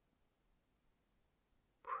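Near silence: quiet room tone, broken near the end by a softly whispered word beginning.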